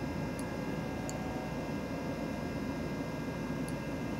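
Steady fan-like hum of a running desktop computer, with a faint constant whine over it, and a few brief faint clicks.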